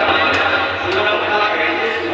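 A man's voice through a microphone and PA, in a sung devotional recitation (kalam), with a low steady hum underneath.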